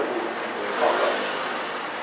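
Steady hiss of room noise through a handheld lecture microphone during a pause in a man's talk, with a faint brief vocal sound about a second in.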